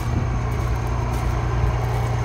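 Peterbilt semi truck's diesel engine idling, a steady low hum that holds even throughout.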